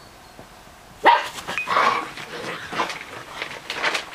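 Six-week-old Bernese mountain dog puppies barking. The barks start suddenly about a second in and then keep coming in short, repeated bursts.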